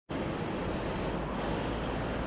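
Steady rumble of fire engines parked and running at a fire scene, mixed with street noise.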